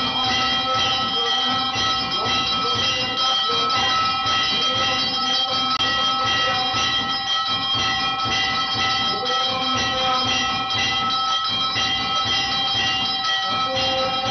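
Temple bells rung rapidly and without pause during the lamp-waving worship (aarti), a steady wash of overlapping metallic ringing with several sustained bell tones.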